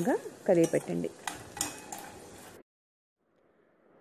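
A spoon clinks and scrapes against a stainless steel pot as fried peanuts, dal and curry leaves are stirred. The sound cuts off abruptly to silence a little past halfway.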